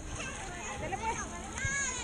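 Background voices of children playing and calling out around a swimming pool, with one high-pitched wavering call near the end.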